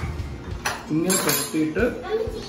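A metal spoon clinking against a ceramic plate and serving dish, a few sharp clinks around the middle, with a voice in the background.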